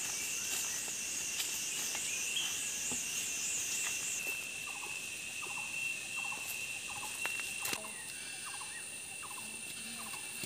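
Forest insects, crickets or cicadas, droning steadily at a high pitch. A second, pulsing insect trill sits above them and stops about four seconds in. Short chirps repeat roughly once a second through the second half, with a few light clicks.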